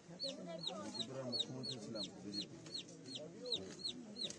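A bird cheeping steadily, short high-pitched falling calls about three a second, over low murmured voices.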